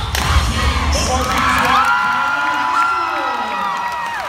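Spectators in a gym cheering and screaming, with several long, high-pitched shrieks overlapping. The cheer routine's backing music stops about a second in.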